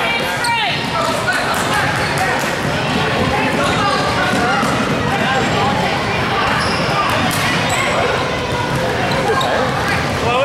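Basketball game on a hardwood gym court: the ball dribbling and sneakers on the floor, under a steady mix of voices from players and onlookers.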